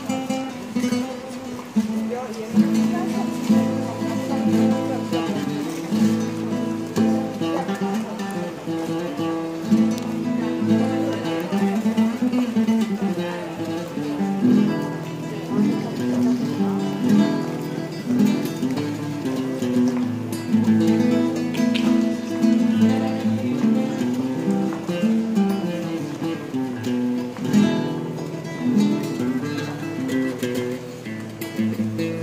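Acoustic guitar played solo by a street musician: a steady run of plucked and strummed notes and chords.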